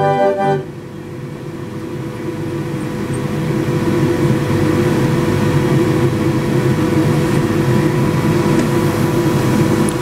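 A 31-keyless McCarthy fairground organ plays its last notes, which stop about half a second in. The organ's motor and air supply run on as an even rushing noise with a steady hum, growing louder over the next few seconds and then holding.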